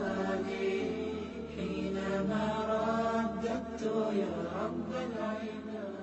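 Chanted vocal music: a voice intoning a slow melodic chant over a low steady drone.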